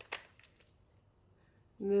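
A few faint plastic clicks from a Dyson Airwrap barrel attachment being handled while it is swapped, all within the first half second, then silence until a spoken word near the end.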